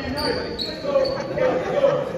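Basketball bouncing on a hardwood gym floor, with voices echoing in the hall and a couple of high squeaks in the first half-second.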